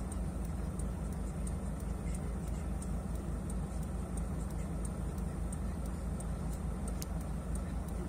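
Mercedes Sprinter van's engine idling steadily with an even low pulse, heard from inside the cab, with faint regular ticking about three times a second.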